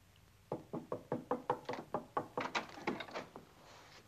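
Rapid knocking on a door: a quick run of sharp knocks, several a second, starting about half a second in and going on for nearly three seconds.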